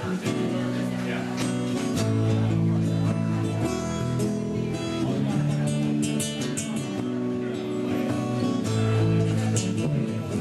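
Instrumental intro of a song played live on two acoustic guitars and an electric bass, the plucked notes keeping a steady rhythm.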